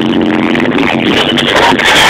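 Live pop band music played loud through a concert sound system, heard from within the audience on a low-fidelity recording, with repeated drum hits.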